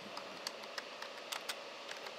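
Computer keyboard typing: a handful of faint, irregularly spaced key clicks as a short word is typed.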